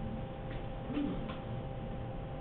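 Classroom room tone: a steady hum with a few faint, irregular clicks.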